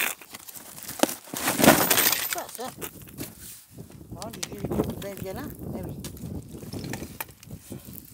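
Hard objects clattering and clinking as a pile of discarded junk is rummaged through by hand, loudest about two seconds in.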